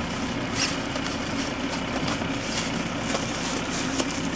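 A vehicle engine idling steadily, with a few faint clicks.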